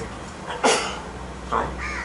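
A crow cawing twice: a short, harsh call about two-thirds of a second in and a weaker one shortly before the end.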